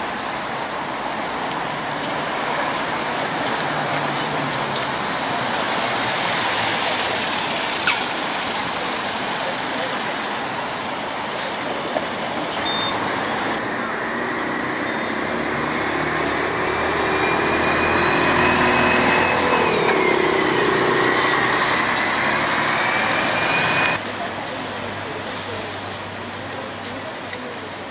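Buses running in street traffic, then a double-decker coach pulling away with an engine and drivetrain whine that rises in pitch, dips at a gear change about twenty seconds in and climbs again, before cutting off abruptly near the end.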